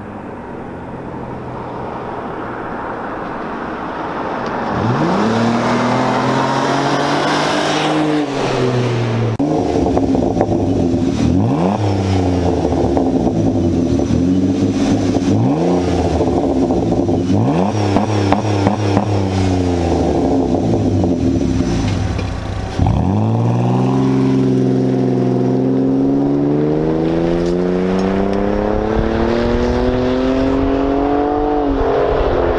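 Straight-piped 3.0 L V6 exhaust of a Ford Escape, getting louder over the first few seconds. It then revs in five or six sharp climbs in pitch, each falling back, and makes one long, steady climb in pitch near the end.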